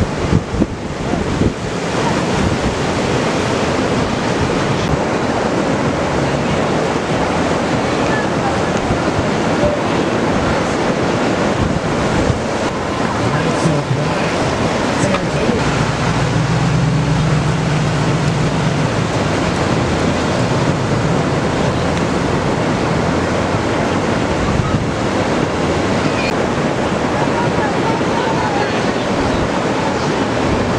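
Ocean surf breaking close by: a steady, even rush of waves and whitewater.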